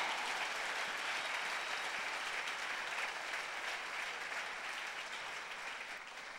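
A congregation clapping, a dense even applause that slowly dies down.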